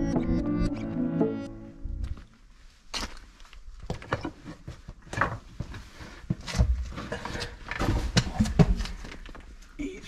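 Background music ending about two seconds in, followed by irregular footsteps and scuffs on a stone and rubble floor inside a small stone tower, the knocks sounding close and boxy.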